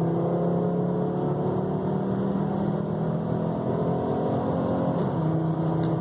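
Turbocharged 2.3-litre inline five-cylinder engine of a 1995 Volvo 850 T-5R under full throttle, heard from inside the cabin, its pitch rising steadily as the revs climb. The turbo is building about 12 to 15 psi of boost with a newly replaced bypass valve.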